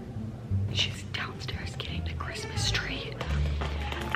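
A young woman whispering, with faint background music underneath.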